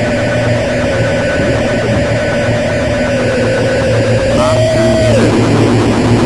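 Experimental noise music in the musique concrète style: a dense wash of noise over a steady low hum, with one wavering held tone that rises a little and then drops away sharply about five seconds in.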